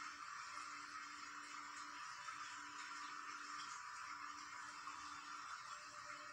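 Faint soft background music under a steady hiss: a low sustained note that sounds for a second or so at a time, returning about every two seconds.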